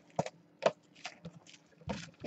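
Plastic shrink-wrap being picked at and peeled off a sealed trading-card box, giving a scatter of short crackles and clicks.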